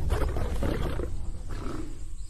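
Lion roaring and growling, a run of rough roars through the first second and a shorter one near the end, over a steady low rumble.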